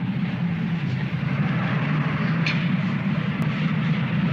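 A Mini car's small four-cylinder engine running steadily as the car pulls up, with a low hum under an even hiss.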